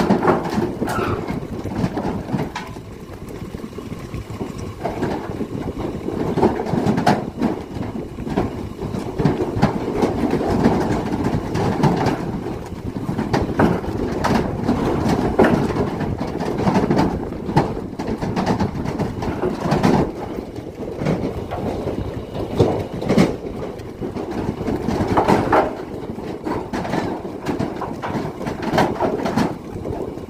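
Zebu heifers' hooves clattering and knocking on the floor of a livestock trailer as they crowd out of the rear door and jump straight down to the ground with no loading ramp, a steady rumbling clatter broken by many irregular bangs.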